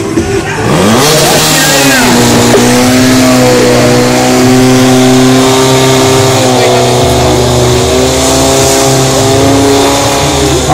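Portable fire pump's petrol engine revving up over the first second or two to full throttle, then running steadily at high speed while it drives water through the hoses to the nozzles.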